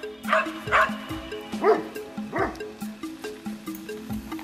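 A dog barking and yipping about four times in quick succession, over background music with a steady low tone.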